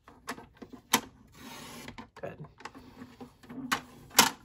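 Sliding paper trimmer cutting patterned paper: a couple of sharp clicks as the paper and cutting arm are set, then the blade carriage runs along the rail with a short hiss of about half a second, followed by more clicks near the end as the cut piece is handled.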